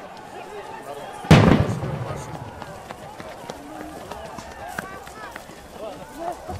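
A single loud bang about a second in, a grenade going off with a short echoing tail, over a crowd's voices.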